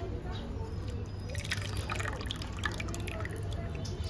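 Wet squelching and dripping of a hand squeezing grated coconut in warm water in a bowl, pressing out coconut milk. The squelching is busiest from about a second in until past the middle.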